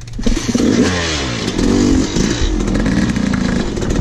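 Yamaha YZ250 two-stroke dirt bike engine revving hard as the bike pulls away, the pitch climbing and dropping several times as the rider opens and closes the throttle.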